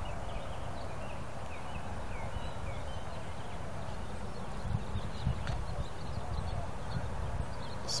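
Outdoor ambience: a steady low rumble with faint bird chirps during the first three seconds and a few soft thumps about five seconds in.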